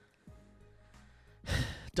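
Quiet, then about one and a half seconds in a man takes a short, loud breath close into the microphone.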